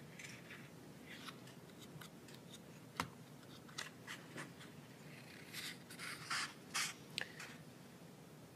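Paper book handled close to a lectern microphone, its pages turned and rustling softly. There is one sharp tap about three seconds in, and a run of louder page rustles in the second half.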